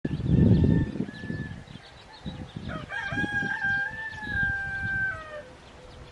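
A rooster crowing once: a long call from about three seconds in, held and then falling off at its end. A louder low rumble of noise fills the first second, with smaller low bursts after it.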